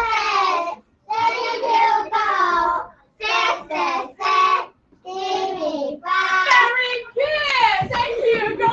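A small group of young children chanting an English rhyme in unison, in short sing-song phrases with brief pauses between, the lines of a baseball chant ('Take the bat, hit the ball, run…').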